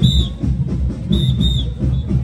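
Festive band music with a heavy drum beat, cut through by a shrill whistle blown in short double blasts, one pair about a second in.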